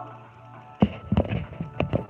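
Handling noise from a phone camera being picked up and repositioned: a sharp knock a little under a second in, then several more knocks and scuffs, over quiet background music.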